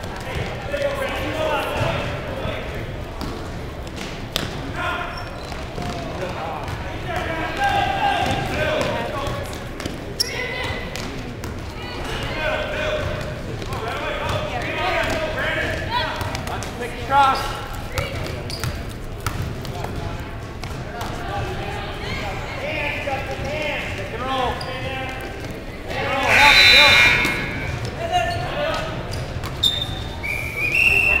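Gym sound of a youth basketball game: spectators' voices and calls with the ball bouncing on the court floor, and a louder shout about 26 seconds in.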